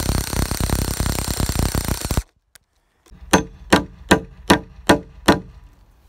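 A power drill boring into a weathered wooden beam for about two seconds, stopping abruptly. After a short gap, six evenly spaced hammer blows with a ringing note drive a long metal rod into the drilled hole.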